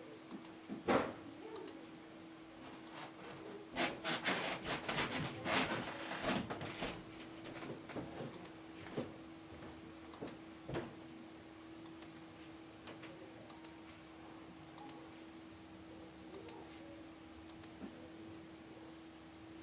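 Computer mouse clicks as items are selected one by one, with a dense patch of rustling and knocks from about 4 to 7 seconds in. A steady low hum runs underneath.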